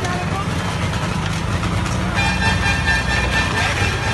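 Busy street noise: a steady low rumble with people's voices. About halfway in, a steady tone with several pitches sounds for nearly two seconds.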